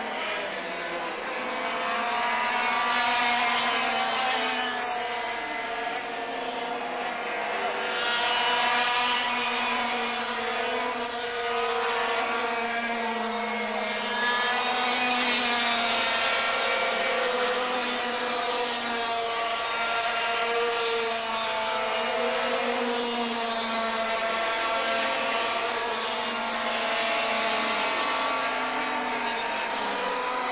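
Formula TKM racing karts' two-stroke engines running on track, their pitch repeatedly rising and falling as they accelerate and lift off through the corners, with more than one engine heard at once.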